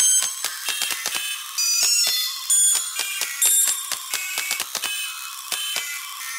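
A rapid, continuing run of high-pitched, bell-like pinging notes, about four or five a second, changing pitch from note to note, with almost no low sound beneath.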